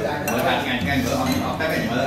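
A metal spoon and chopsticks clinking against a ceramic soup bowl while someone eats noodle soup.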